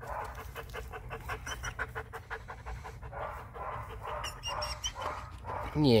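Wolfdog panting close by in a rapid, even rhythm.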